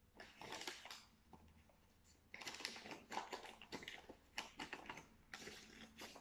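Paper bag and paper cut-outs rustling and crinkling in the hands as glued paper pieces are pressed onto the bag. The sound is faint and comes in irregular crackly bursts with small clicks, mostly in the second half.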